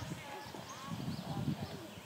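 Indistinct background voices talking, with short, high chirps scattered through.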